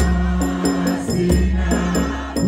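A congregation choir singing an isiXhosa hymn together in harmony, led by voices on microphones, over a quick, steady beat of sharp strikes, about four a second.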